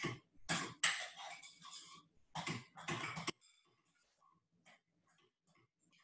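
Stirring a thick, moist burger mixture of mashed roast vegetables, cracker crumbs and grated mushroom in a bowl: a run of uneven scraping, squelching strokes for about three seconds, then it stops, leaving only a few faint ticks.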